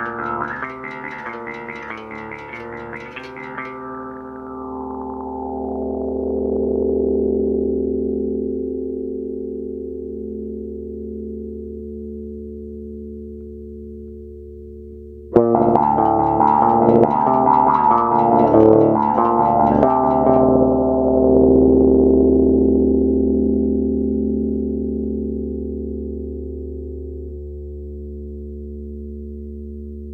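Gibson Thunderbird IV bass guitar played through a Seamoon Funk Machine envelope filter: a run of quick plucked notes with a wah-like quack, then a long note left to ring while the filter closes and the tone goes dull. The pattern repeats about halfway through, with louder, brighter notes.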